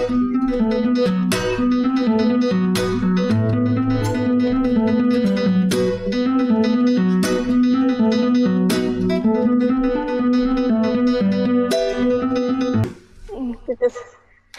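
Acoustic guitar played fingerstyle: a plucked melody over a repeating bass line, which stops about 13 seconds in. A few faint, short sounds follow near the end.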